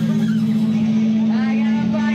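Live band on stage holding a loud, steady low drone, with a voice sliding up in pitch over it about one and a half seconds in.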